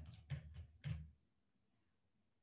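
About four or five quick, soft knocks and handling bumps packed into the first second or so.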